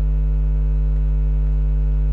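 Steady electrical mains hum: a loud, unchanging low drone with a stack of evenly spaced overtones.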